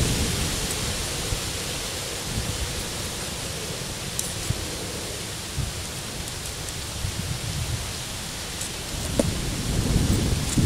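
Steady outdoor background hiss with an uneven low rumble of wind on the microphone, broken only by a few faint small clicks.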